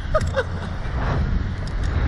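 Wind rumbling on the microphone of the camera mounted on a SlingShot ride capsule as it swings through the air, with a short sigh and two brief falling vocal sounds near the start.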